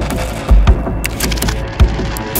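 Horror film trailer soundtrack: a dense music bed struck by heavy, low, booming hits, two in quick succession about half a second in and one more near the end.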